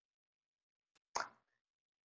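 Near silence, broken a little past a second in by one short, faint click.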